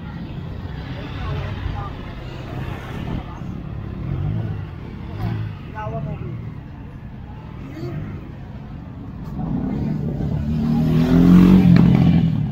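Motorcycle engine revving close by near the end, its pitch rising over about two seconds, the loudest sound here. Before that, crowd chatter and bits of talk.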